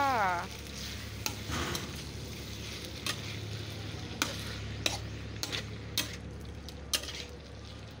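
Snails in their shells sizzling in hot oil in a steel wok while a metal spatula stirs them, the spatula scraping and clicking against the wok about once a second. The snails have just gone in on top of chilies already fried in the oil.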